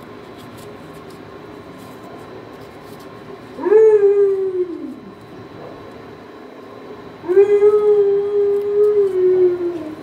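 A dog howling: a shorter howl about three and a half seconds in that rises and then slides down, then a longer held howl from about seven seconds in that eases down in pitch at its end.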